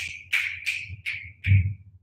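A man snapping his fingers repeatedly: six short, sharp snaps about three a second, each fading quickly.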